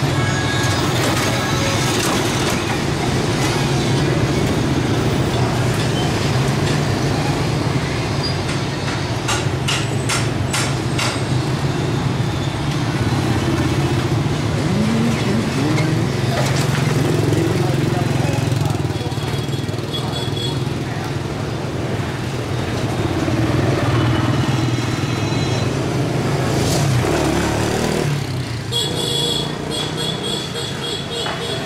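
Busy motorbike and scooter street traffic: many small engines running together as a steady low hum, with one engine revving up and down about halfway through and a horn-like tone sounding near the end.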